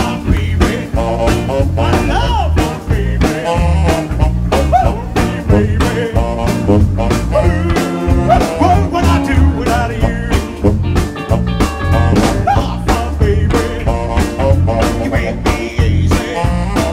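Rockabilly band playing live: drum kit keeping a steady beat, with electric bass, electric guitar and saxophone.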